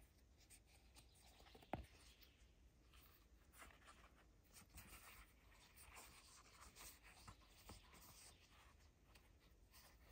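Faint scratching and rustling of thread being drawn through a leather knife sheath as it is stitched by hand, with one sharp click a little under two seconds in.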